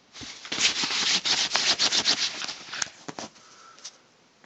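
A dog digging at a blanket: fast, scratchy rubbing of paws on fabric that runs for nearly three seconds, then dies away.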